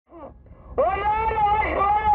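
A voice calling out through a vehicle-mounted loudspeaker horn in long, drawn-out notes that sound thin and cut off at the top, starting loud about a second in after a faint call. A low rumble from the moving vehicle runs underneath.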